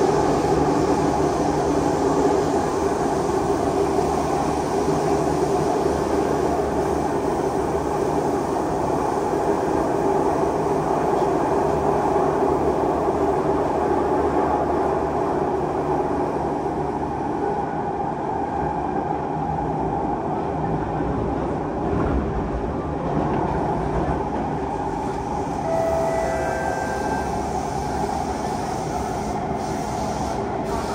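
Cabin noise of a Siemens C651 metro train under way: a steady rumble of wheels on rail and running gear, easing slightly over the second half. Near the end come a few brief high-pitched tones.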